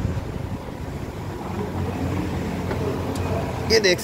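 Massey Ferguson 241 DI Eagle tractor's three-cylinder diesel engine idling steadily.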